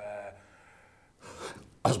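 A man's voice trails off, then after a short pause comes a quick audible intake of breath before he speaks again.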